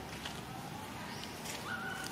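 Steady outdoor background noise with a few faint ticks, and near the end a short, high animal call.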